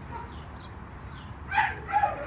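Low steady background, then about a second and a half in, a short high-pitched whimper from a dog.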